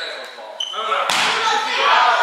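Players' voices echoing in a large gymnasium, growing louder after a sudden thump about a second in. Brief high-pitched sneaker squeaks on the wooden court come at the start and again about half a second in.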